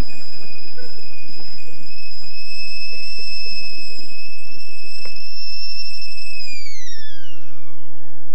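Stovetop whistling kettle at the boil, giving one high, steady whistle. About six seconds in, the pitch starts to slide steadily down as the kettle is lifted off the heat.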